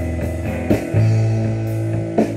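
Live rock band playing an instrumental passage: electric guitars over a drum kit, with drum hits about once a second and a strong low note held from about halfway through.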